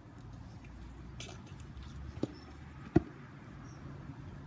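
Two sharp knocks about three-quarters of a second apart, the second louder, over a low steady rumble.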